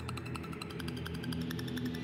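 Quiz-show scoreboard countdown effect: rapid, even ticking over a low, steady droning music bed as the score counts down.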